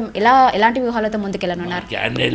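Speech: one person talking steadily.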